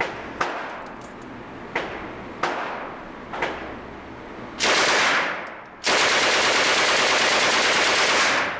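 Port Said 9mm submachine gun, the Egyptian copy of the Swedish K m/45, firing two full-auto bursts from its open bolt inside an indoor range: a short burst of about a second, then a longer one of about two and a half seconds, echoing off the range walls. Before them come four separate sharp bangs.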